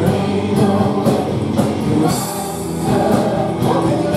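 Live worship band playing a praise song: singing over guitars, keyboard and a steady drum beat.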